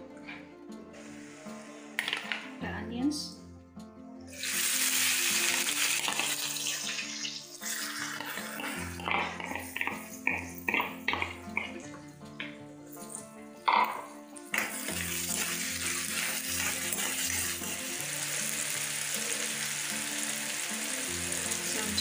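Chopped onion frying in hot oil in a wok. The sizzle starts suddenly about four seconds in, there are knocks and scrapes of the pan being stirred in the middle, and the sizzling runs steadily through the second half, under background music.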